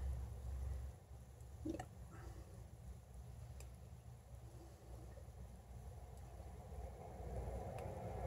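Quiet room with faint handling sounds: fingers working open a split vanilla bean, with one soft tap about two seconds in.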